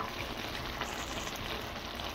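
Fried cabbage with sausage and bacon sizzling steadily in a pot as it cooks down, a fine, even crackle.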